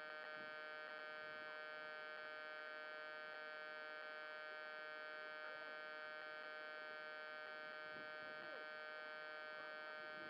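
Steady electrical hum and whine from the downed RC aircraft's onboard electronics, picked up by its camera. It holds several fixed pitches and does not change.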